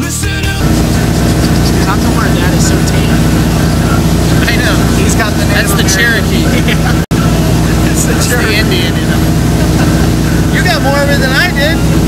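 Motorboat engine running under way, a loud steady drone with wind and water rush, and men's voices talking over it. The sound drops out for an instant about seven seconds in.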